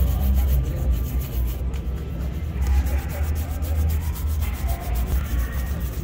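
A shoe-shine brush scrubbing a black leather shoe in rapid, even back-and-forth strokes, several a second, over a steady low rumble.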